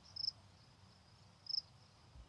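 Cricket chirps used as a comedy sound effect for an awkward silence: two short, faint, high chirps, one just after the start and one about a second and a half in.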